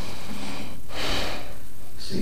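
A breath drawn into a close microphone in the gap between sung phrases, strongest about a second in, over a low sound that carries on underneath.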